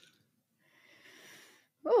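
A faint breathy exhale into a microphone about a second in, then a short vocal "ooh" with a falling pitch near the end.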